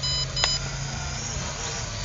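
Quick run of short, high electronic beeps from a toy drone's remote controller, about three a second, stopping about half a second in. A steady low hum continues underneath.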